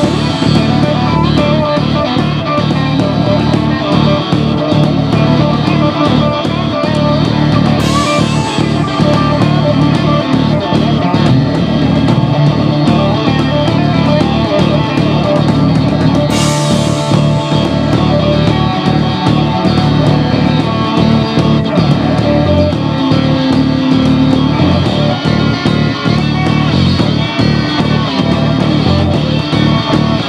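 Live rock band playing, electric guitar to the fore over drums, with cymbal crashes about eight seconds in and again just past halfway.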